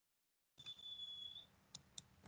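Near silence: the call audio is dead for about half a second, then faint room noise opens up with a thin high tone, and two faint clicks come near the end, mouse clicks as the presentation slide is advanced.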